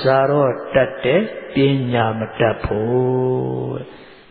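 A Buddhist monk's voice chanting in a slow, level intonation, with long held syllables in four or so phrases.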